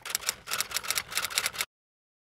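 Typewriter key-strike sound effect: a rapid run of sharp mechanical clicks, about seven a second, that stops suddenly about three-quarters of the way through.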